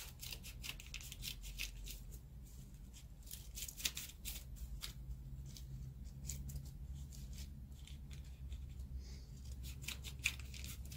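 Scissors snipping through paper in irregular runs of quick cuts, with a low steady hum underneath.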